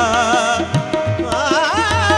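Qawwali music: a singer's wavering, ornamented vocal line over a steady held drone and a regular beat of hand-drum strokes.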